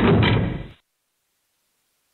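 Prison cell door sound effect: one loud slide-and-slam that starts suddenly and fades out within about a second.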